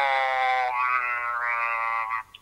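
A young man's drawn-out hesitation sound, a held 'ehhh' at a steady pitch for about two seconds, its vowel shifting slightly near the end.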